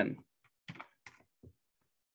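A few light computer-keyboard keystrokes: about four short clicks spread over a second as a spreadsheet formula is finished and entered.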